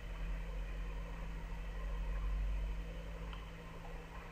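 Steady background hum and hiss with no distinct events: the room tone of the narrator's microphone during a pause, with a low steady electrical hum underneath.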